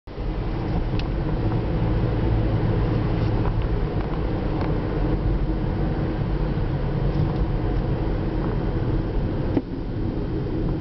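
Steady low rumble of a car's engine and tyres, heard from inside the moving car's cabin, with a few faint ticks and a sharper click shortly before the end.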